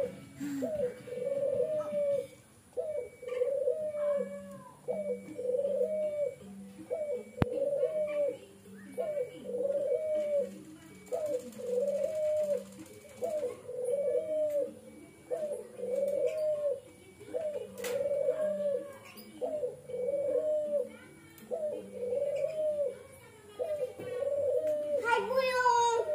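Ringneck dove (Barbary dove, burung puter) cooing over and over, the same arched call repeated about once every two seconds.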